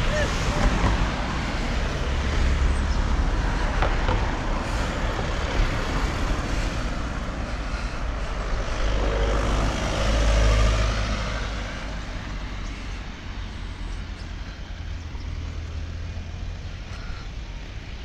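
City road traffic: cars passing steadily, with a light pickup truck driving past close by and loudest about ten seconds in, after which the traffic noise eases.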